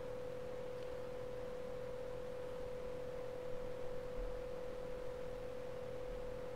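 A steady single-pitched tone, constant in pitch and level, over faint background hiss.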